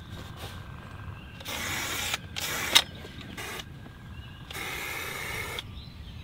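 Aerosol marking paint sprayed from an inverted can on a wand applicator, hissing in four short spurts as a bed line is drawn on the dirt. The last spurt is the longest, about a second, and there is a sharp click midway.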